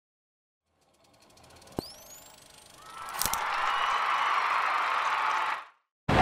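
Logo-intro sound effect: after about a second of silence a faint hiss swells in, a sharp click with a quick rising whistle comes about two seconds in, then two more clicks open a louder steady rushing noise that cuts off suddenly shortly before the end.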